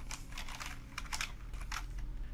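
Computer keyboard typing: a string of separate keystrokes, quicker in the first second and more spaced out after.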